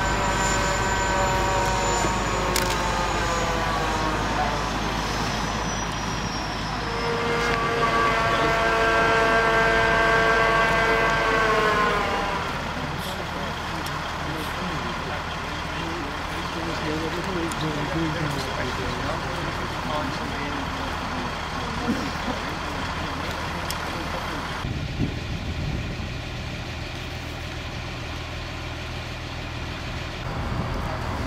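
Large mobile crane's diesel engine revving under load as it lowers a precast concrete culvert section. The engine note falls away a few seconds in, climbs back and holds high, then drops to a low steady running about twelve seconds in.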